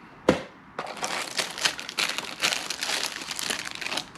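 Plastic packaging crinkling and rustling continuously as fishing-lure packs are handled and drawn out of a box, after a single sharp click just before.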